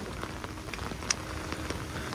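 Steady heavy rain falling on flooded paving, an even hiss with a few faint ticks of drops.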